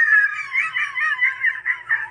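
A person laughing hard in a high-pitched squeal. The squeal breaks about half a second in into quick gasping bursts, about six a second.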